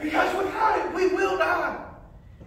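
A loud, drawn-out shout from a man's voice, a preacher's emphatic cry, lasting nearly two seconds and breaking off just before the end.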